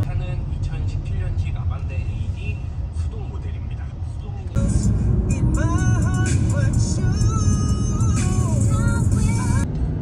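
Background pop music with a singing voice; a louder, fuller section starts suddenly about halfway through. A steady low road rumble from a moving car runs underneath.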